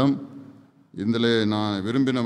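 A man speaking in Tamil, trailing off at the start, then a pause of under a second before he resumes speaking steadily.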